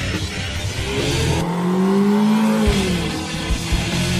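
Rock intro music, broken in the middle by a car engine sound effect that rises and then falls in pitch, like a car revving past.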